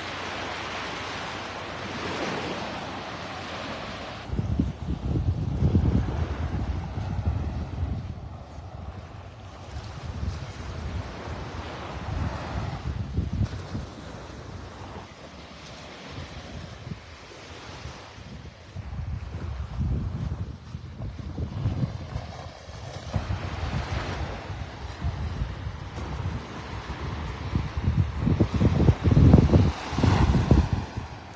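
Small Gulf of Mexico waves breaking and washing up the beach, with wind gusting across the phone's microphone. The wind gusts come and go, strongest about five seconds in and again near the end.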